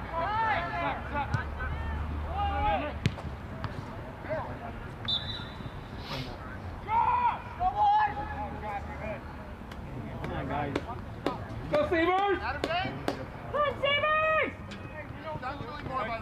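Players' shouts carrying across an outdoor soccer field, with occasional sharp thuds of the ball being kicked. A short high steady tone sounds about five seconds in.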